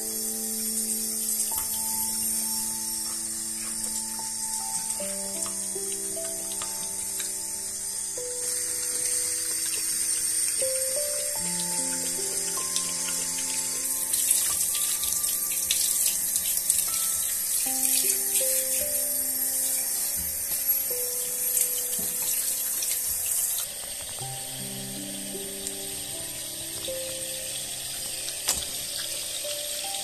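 Water spraying from a handheld shower head onto a puppy's wet fur and the tiled floor, a steady hiss that grows stronger in the middle and drops off sharply about two-thirds of the way through. Slow background music of held notes plays throughout.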